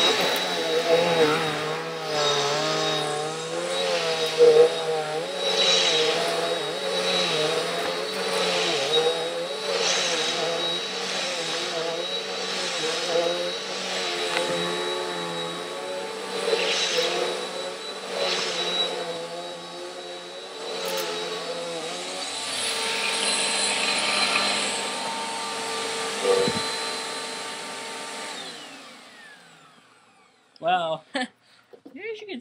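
Dirt Devil Dynamite cyclonic upright vacuum running on carpet, with a steady high whine over a motor note that wavers and surges about once a second as it is pushed back and forth. Near the end the motor winds down and stops.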